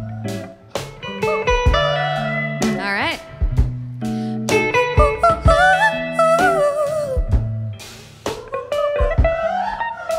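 A woman's wordless vocal runs, sung into a microphone, gliding and curling up and down in pitch over a live band: electric guitar and bass notes with sharp drum hits.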